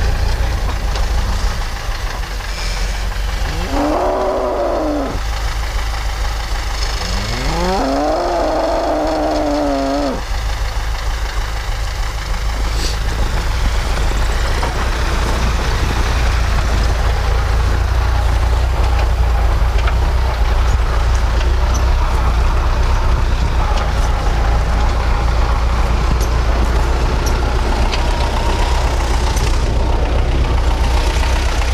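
A cow mooing twice, a short call about four seconds in and a longer one about seven seconds in that rises in pitch at its start, over a steady low rumble.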